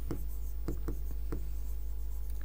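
Stylus writing on an interactive display screen: a few faint taps and short strokes over a steady low hum.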